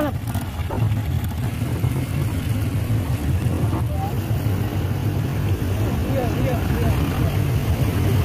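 A motor vehicle's engine running steadily with an even low rumble.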